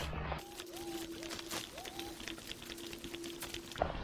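Footsteps on a grassy woodland path, with a faint steady hum underneath and a few short rising chirps in the first two seconds.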